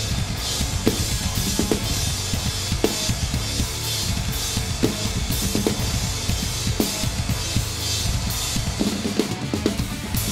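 Acoustic drum kit played in a heavy metal groove, with rapid bass drum strokes under snare hits and cymbal crashes, all over the song's recorded backing track.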